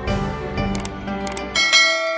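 Background music that breaks off about one and a half seconds in, replaced by a bright bell-like chime that rings on and slowly fades: the ding of a subscribe-button animation.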